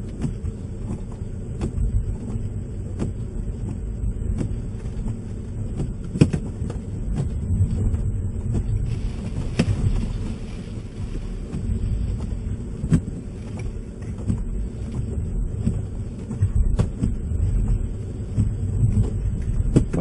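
A car's engine and tyres running slowly on snow, heard from inside the cabin as a low rumble while the car turns around on a snowy road. Scattered knocks and clicks come through, and about halfway through there is a brief hiss as snow falls onto the windshield.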